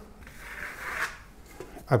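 Small steel Venetian trowel drawn across a thin coat of matte decorative paint on a sample board: one soft scraping stroke that swells about a second in and then fades.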